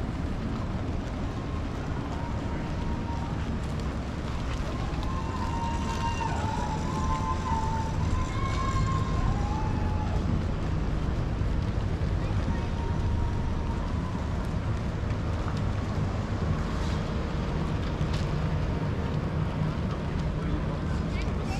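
Harbour ambience: a steady low engine drone from boats on the water, with wind on the microphone. Passers-by's voices are heard in the middle stretch.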